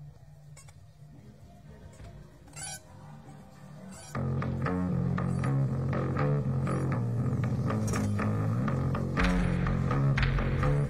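Gothic rock song: a quiet low drone opens, then about four seconds in bass guitar and electric guitar come in loudly with a steady line of notes. The sound grows heavier in the low end about nine seconds in.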